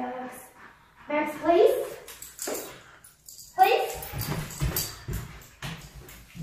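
Footsteps and a large dog's paws thudding on a hardwood floor as the German Shepherd gets up and moves, the thumps coming in a run from about two-thirds of the way through. A couple of short spoken words are heard before that.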